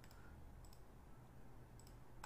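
Near silence with low room hum and a few faint clicks.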